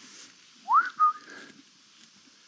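A person whistling to call horses along: a quick rising whistle about half a second in, then a short steady note.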